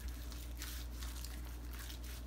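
A gloved hand rubbing yellow mustard over a raw brisket gives faint, irregular wet smearing sounds. A steady low hum runs underneath.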